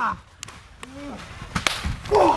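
A few separate sharp smacks, the loudest pair near the end, typical of strikes landing between wrestlers in a backyard ring. A faint short voice comes in about a second in.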